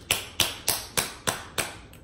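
Sauce bottle being smacked against a hand: seven sharp, evenly spaced taps, about three a second.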